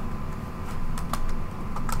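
Computer keyboard typing: a few scattered keystrokes, irregularly spaced, as code is entered.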